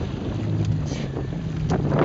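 Outboard motor of a coaching inflatable boat running steadily, a low hum, with wind buffeting the microphone. A couple of light knocks sound near the end.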